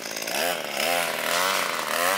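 A landscaper's gas trimmer running, its small engine's pitch rising and falling repeatedly as the throttle is worked.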